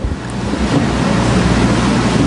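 Steady rushing noise with a low rumble on the lectern microphone, like air or breath blowing across it.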